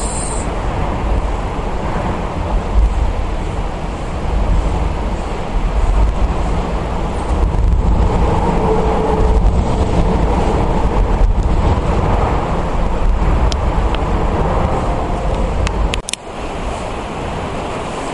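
Loud, steady low rumble of road traffic on the bridge deck overhead. It breaks off suddenly about sixteen seconds in and comes back a little quieter.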